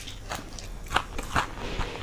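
Close-miked chewing of a handful of khichdi eaten by hand, with about four sharp, crisp crunches in two seconds, the loudest about a second in.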